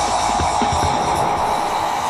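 Psytrance music in a short break where the kick drum has dropped out, leaving a steady mid-pitched synth drone and light percussion. The bass thins out toward the end.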